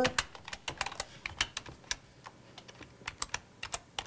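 Typing on a computer keyboard: a run of irregular key clicks that thins out about two seconds in and picks up again near the end.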